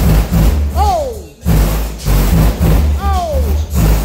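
A song played loud through a car's custom audio system during a bass test. Heavy bass notes pulse in a beat, and two falling swooping notes come about a second in and again near three seconds in.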